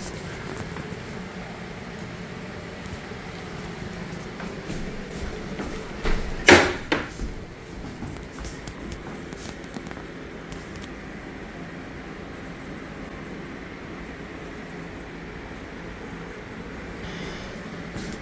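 Steady low background hum, broken about six and a half seconds in by a sharp knock and a smaller one just after, like hard plastic being bumped during handling.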